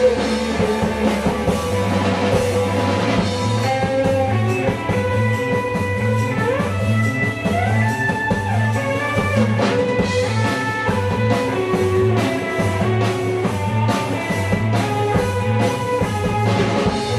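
Live rock band playing: electric guitar over bass and drum kit, with a steady beat. Around the middle, a line slides up and then back down in pitch.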